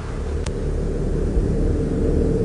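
A low, steady rumble that grows slightly louder, with one faint click about half a second in.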